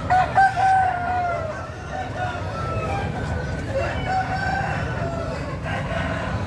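Caged game roosters crowing, one long crow after another, the loudest in the first second and a half, over a steady low background din of the crowd.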